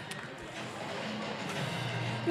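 Steady background noise of an indoor athletics hall, with faint music underneath.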